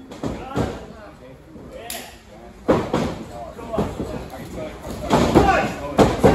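Thuds and slams of bodies and knees landing on a wrestling ring's canvas mat, the sharpest one a little under halfway through, with men's voices and grunts between them.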